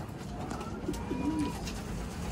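Racing pigeons cooing, with a low, wavering coo about half a second in.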